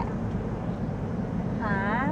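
Passenger van driving, a steady low rumble of engine and road noise heard from inside the cabin. A woman's voice starts near the end.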